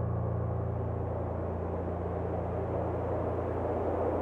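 A steady low rumbling drone, a few fixed low pitches with a rushing noise over them, filling a break in the song where the piano has stopped.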